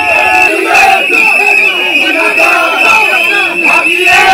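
A crowd of protesters shouting together, many voices overlapping, with a steady high-pitched tone sounding beneath the voices.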